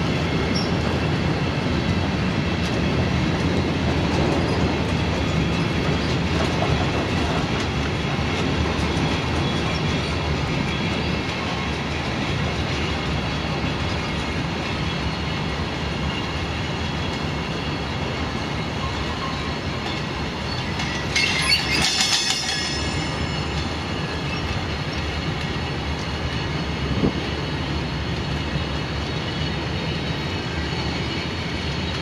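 Freight train of Cargowaggon bogie vans rolling past at speed: a steady rumble and clatter of wheels on the rails. About two-thirds of the way through there is a brief high squeal from the wheels, and a single sharp knock a few seconds later.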